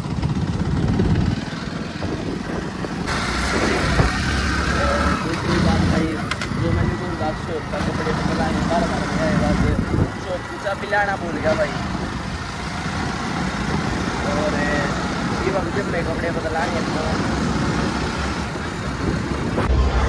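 Motorcycle engine running while the bike is ridden along the road, with wind noise rumbling on the microphone.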